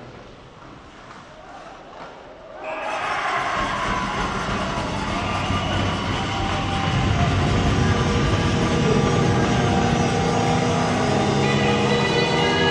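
Arena goal horn starting suddenly about three seconds in and sounding steadily over the arena's noise, signalling a goal.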